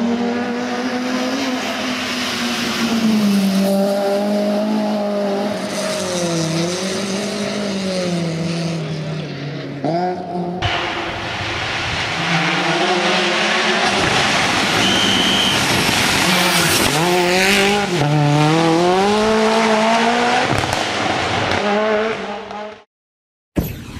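Race car engine at high revs, its pitch climbing and dropping again and again through gear changes and lifts off the throttle. About ten seconds in, the sound changes abruptly to another car doing the same.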